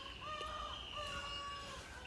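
A rooster crowing faintly, one drawn-out crow of well over a second.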